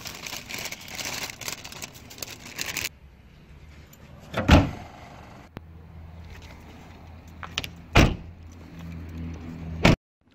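Wrapping paper crinkling and rustling for about three seconds, then car doors shutting with loud thumps, twice, with a steady low hum between them.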